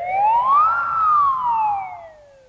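Cartoon sound effect: a single whistle-like tone that glides up in pitch, peaks a little under a second in, then slides back down.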